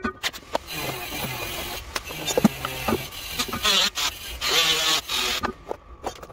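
Workshop handling noise: a string of clicks, knocks and rattles as hand tools and metal and wooden parts are moved about on a board. Near the end, things rattle around in a plastic power-tool case as it is searched through.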